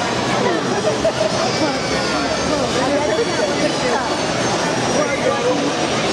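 Steady din of many voices talking and calling out at once in a large hall, with no single voice standing out.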